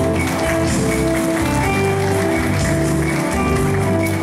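Electronic keyboard played solo: held melody notes over low bass notes, with a steady light ticking rhythm behind them like a built-in accompaniment beat.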